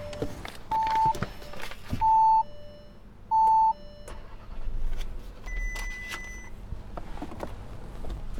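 Audi Q3 warning chime: a two-note ding-dong, high then lower, repeating about every 1.3 s four times and stopping about 4 s in, the alert that the ignition is on while the driver's door is open and the battery is draining. A few sharp knocks from the driver getting into the seat come between the chimes.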